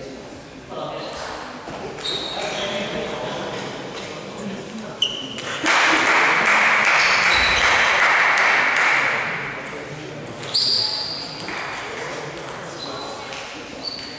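Table tennis balls pinging sharply now and then in a large, echoing sports hall, among voices. From about six seconds in, a loud steady rushing noise covers everything for three to four seconds.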